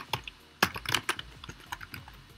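Typing on a computer keyboard: a run of irregularly spaced keystroke clicks as a word is deleted and a new one typed.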